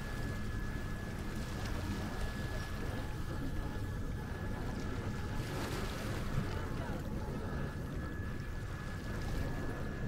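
Boat travelling on a canal: a steady low motor hum with water and wind noise, unchanging throughout.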